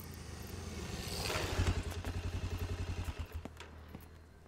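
A motor vehicle engine running with a rapid, even throb. It grows louder over the first second and a half and fades near the end.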